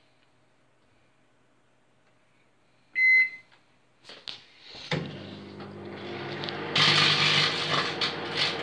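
Microwave oven starting up: a single short beep about three seconds in, a couple of clicks, then a steady running hum from about five seconds in. A louder rushing noise joins the hum about seven seconds in.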